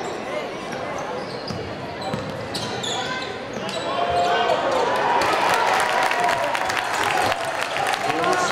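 A basketball bouncing on a hardwood gym floor among many overlapping crowd voices and shouts. The crowd gets louder about halfway through.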